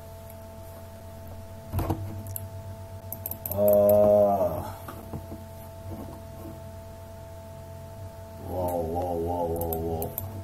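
A man humming twice: a short rise-and-fall hum about four seconds in, the loudest sound here, and a longer wavering hum near the end. Both sit over a steady background hum, with a single click about two seconds in.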